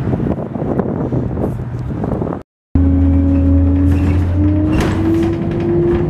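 Wind buffeting the microphone beside a street for the first two seconds or so, then, after a short break, the inside of a moving city bus: a steady low engine hum with a whine that slowly rises in pitch.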